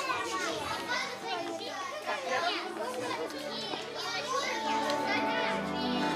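A group of young children chattering and calling out over one another on a stage. Held musical notes come in over the chatter a little past the middle, the start of a song's backing music.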